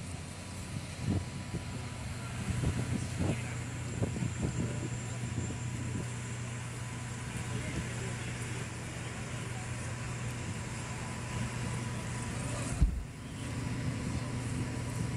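Outdoor ambient noise with a steady low hum, faint voices and a few knocks in the first seconds, and one sharp thump near the end.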